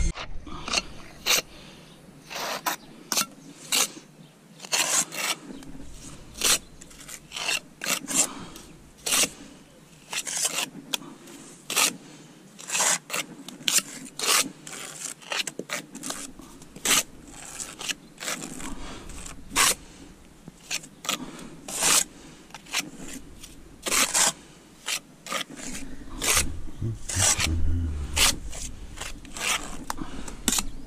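Small steel pointing trowel scraping lime mortar off a larger trowel and pressing it into brick joints: an irregular run of short scrapes, about one or two a second.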